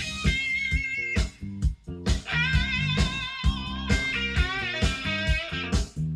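A blue-eyed soul record playing on a turntable: an electric guitar lead over bass and a steady drum beat, with a short stop-time break about a second in.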